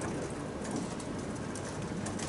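Steady room noise with a few faint, light clicks.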